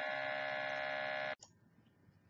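GEM5000 gas analyzer's built-in sample pump running with a steady buzzing hum as it draws a gas sample, cutting off suddenly about a second and a half in.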